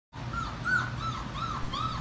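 Young puppies whimpering: a run of short, high, arching whines, about three a second.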